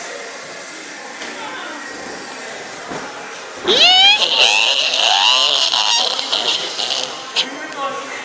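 Quiet room noise, then about three and a half seconds in a sudden loud, high-pitched shriek that rises in pitch, followed by about three seconds of overlapping screaming and yelling from several voices that dies down near the end.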